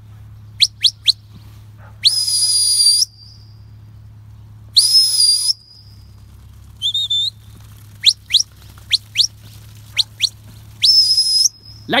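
Shepherd's whistle giving commands to a working sheepdog: quick runs of short rising chirps and three longer held blasts, the first long one about two seconds in and the last near the end.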